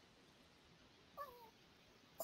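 A single short, faint animal call that falls in pitch, a little over a second in; otherwise near silence.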